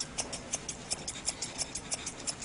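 Grooming scissors snipping rapidly through dog hair on the ear, a steady run of short, crisp snips about six or seven a second.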